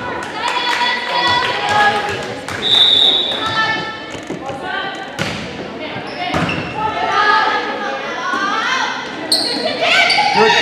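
Indoor volleyball rally in an echoing gym: sharp hits of the ball among short, gliding squeaks of sneakers on the hardwood court, with voices from players and spectators throughout.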